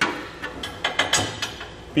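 Steel underbed hitch parts knocking and clinking against the truck's frame crossmembers as they are positioned by hand: several short, sharp knocks in irregular succession.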